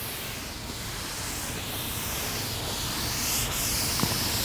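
Cloth wiping a chalkboard in repeated strokes, a rubbing hiss that swells and fades with each stroke.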